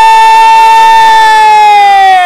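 A man's very loud, drawn-out shout held on one note, like a jubilant cheer, sagging slightly in pitch near the end.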